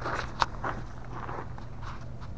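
Footsteps on gravel, several soft steps, with one sharp click about half a second in.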